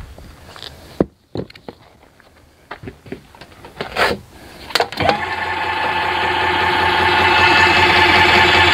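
Electric motor of a Glide 'n Go XR power seat lift starting about five seconds in and running steadily, slowly getting louder. Before it, a few light clicks and knocks from the lift's seat and parts being handled.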